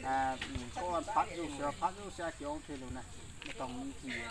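A man talking: speech only, no other sound stands out.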